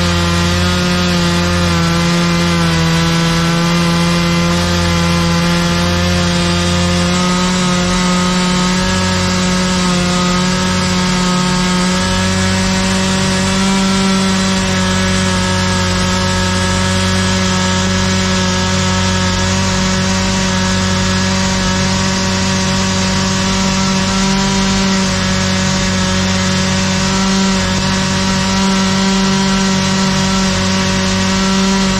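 High-pressure sewer-jetting nozzle blasting water jets inside a drain pipe at a manhole: a loud, steady spray hiss over an even droning hum.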